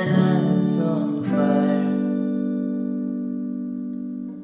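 Guitar chord strummed about a second in and left to ring, slowly fading. Before it, a held sung note wavers and ends.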